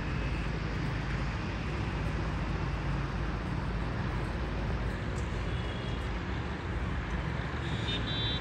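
Steady hum of road traffic rising from the street below, with no single vehicle standing out.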